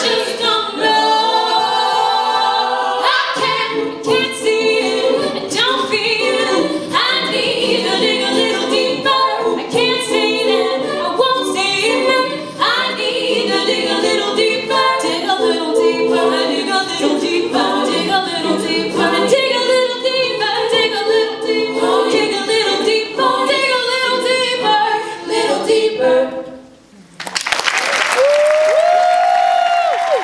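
All-female a cappella group singing in close harmony over beatboxed vocal percussion that keeps a steady beat. The song cuts off about 27 seconds in, and after a brief gap an audience applauds and cheers.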